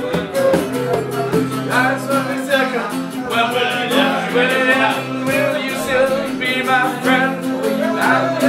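Two acoustic guitars, a nylon-string classical and a steel-string, strummed together, with a man singing over them from about two seconds in.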